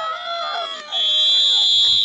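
Referee's whistle: one long, steady, high blast starting about a second in, after a moment of shouting voices.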